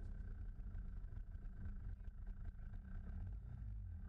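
Onboard sound of a two-stroke racing kart engine running steadily, heard muffled as a low rumble with a faint steady whine above it.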